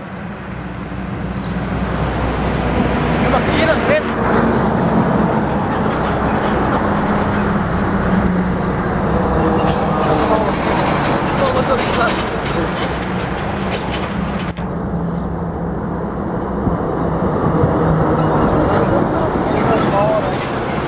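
Heavy diesel semi-trailer trucks driving past close by: a steady low engine drone under loud tyre and road noise. The sound changes abruptly about three-quarters of the way through, turning duller.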